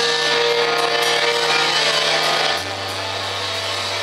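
Live rock band playing loud: electric guitars and bass hold ringing chords, with the low bass note stepping down about two and a half seconds in.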